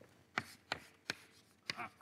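Chalk striking and scraping on a blackboard while writing: about four short, sharp taps spread across two seconds.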